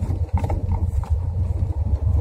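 Vehicle cabin noise while driving on a narrow road: a steady low rumble of engine and tyres, with scattered short knocks and rattles.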